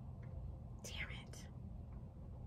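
Soft breathy mouth sounds from a woman, two short puffs of air about a second in, over a low steady room hum.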